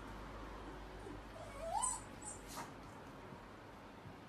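A dog gives one short whine that rises in pitch, about a second and a half in, followed by a faint click.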